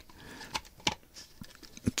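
A few light clicks and taps of 3D-printed plastic parts being handled as a slotted axle is fitted into the body.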